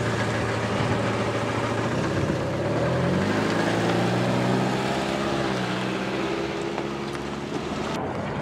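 A car engine as a car drives close past and pulls away, its note rising about three seconds in as it accelerates, then easing off slightly near the end.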